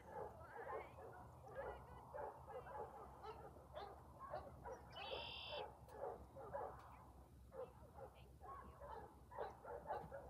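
A dog whining and yipping in quick, repeated short cries. A brief high whistle-like note comes about halfway through.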